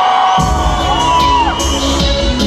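A live band comes in about half a second in, with bass and drums starting suddenly under a crowd that is cheering and whooping.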